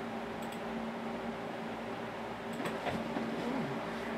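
Steady background room hum with a faint steady tone in it, and a couple of faint ticks.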